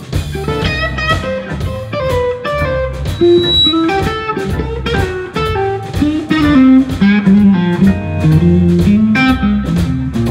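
A live blues band plays an instrumental passage with no vocals: a Stratocaster-style electric guitar over organ and drum kit.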